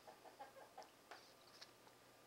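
Near silence: room tone with a few faint short clicks.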